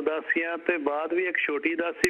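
Speech only: a caller talking over a telephone line, the voice narrow and thin as phone audio is.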